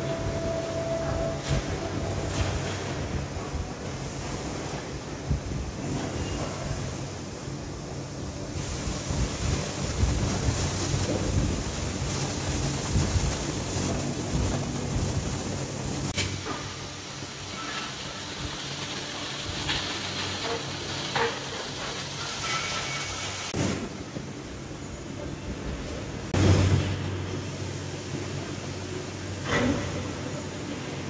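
Steady rumbling, hissing machinery noise of an aluminium die-casting shop around an automatic ladle working a molten-aluminium holding furnace, with a few sharp knocks, the loudest near the end.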